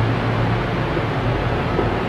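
Steady background hiss with a low, even hum underneath: room noise with no distinct events.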